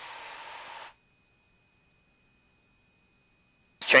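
Faint hiss with a thin steady tone from the cockpit intercom audio feed, cutting off abruptly to silence about a second in. A man's voice starts right at the end.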